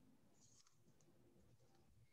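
Near silence: video-call room tone, with a few faint clicks about half a second in.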